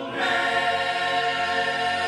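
Male-voice choir singing a cappella, holding a sustained chord; a new chord comes in after a short break just after the start.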